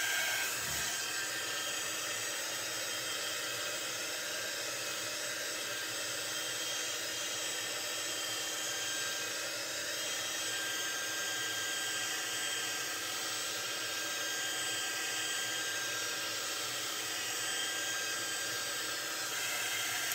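Handheld craft heat gun running steadily, its small fan blowing hot air over wood cutouts to dry the chalk paste on them.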